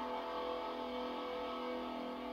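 A guitar chord on a rock karaoke backing track, held and ringing out steadily at the end of the song, played back through a TV's speakers.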